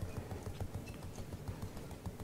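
Faint footsteps of a person walking up to a table, a run of quick, soft low knocks.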